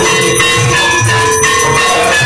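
Hindu temple aarti instruments playing: bells ringing over a drum beating about three times a second, with metallic clashes of cymbals.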